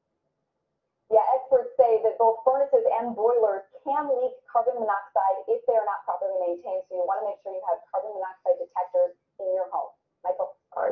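Speech from a TV news report playing from a web page, starting about a second in after a short silence.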